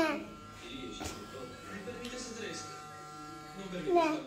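Electric hair clipper buzzing steadily. A falling voiced 'oh' sounds at the start and again near the end, over faint background speech and music.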